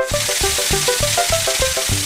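Cartoon car-wash water jets hissing during the rinse, starting suddenly and lasting about two seconds, over light background music with a short-note melody and a steady beat.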